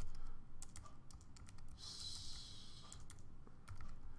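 Typing on a computer keyboard: a quick, uneven run of key clicks as a line of code is typed, with a brief hiss lasting about a second midway.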